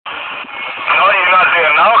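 A person talking, starting about a second in; before that, a steady background hiss.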